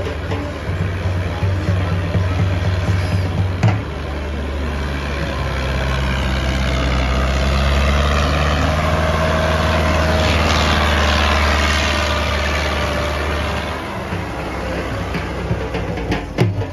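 Tractor diesel engine working under load as it pulls a disc harrow through the soil, running steadily and growing louder toward the middle before easing near the end. Dhol drumming is heard over it in the first few seconds.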